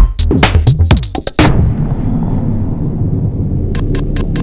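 Electronic dance music with a drum-machine beat, which stops about a second and a half in. A deep boom follows and rumbles on steadily. Quick ticks begin just before the end.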